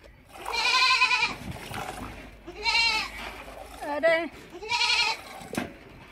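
Goat bleating four times, each call short and wavering, coming about a second or so apart.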